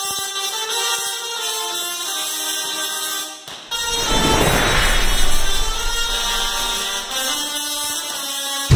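Tesla coil discharging in a loud, horn-like buzz whose pitch shifts in steps. From about four seconds in, a heavier crackling hiss of larger sparks joins it.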